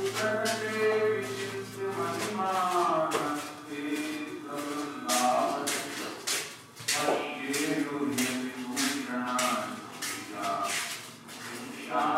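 Several voices chanting together in long, overlapping held notes, with many sharp clicks throughout. A low steady hum runs underneath and stops about two and a half seconds in.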